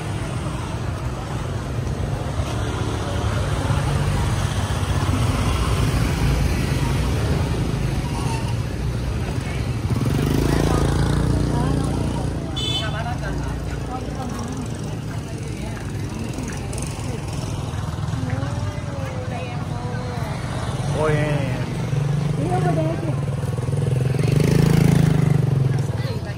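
Busy street ambience with motorbike engines running and passing, and people's voices over the top. The engine rumble swells loudest near the end.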